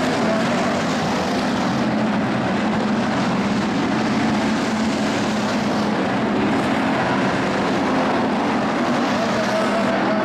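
IMCA Hobby Stock race cars running at speed around a dirt oval, several engines blending into one steady, loud racing sound with no break.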